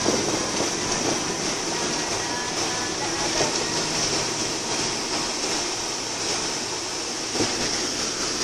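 Steady road and wind noise of a car driving at speed across a bridge, heard from inside the car, with a short knock near the end.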